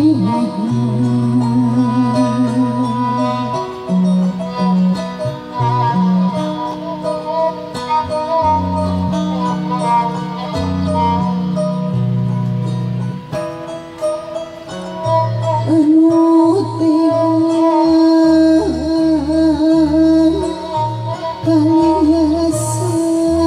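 Sundanese tembang Cianjuran in laras mandalungan tuning: kacapi zithers plucking low notes under a violin melody with vibrato, in an instrumental passage. A woman's ornamented singing comes back in about two-thirds of the way through.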